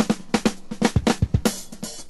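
Funk drum break on a recorded drum kit: quick snare and bass drum strokes played with little else underneath, in a busy, driving rhythm.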